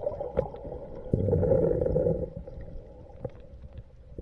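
Muffled underwater rumble and gurgling of water around a submerged camera, swelling about a second in and fading after another second, with scattered small clicks.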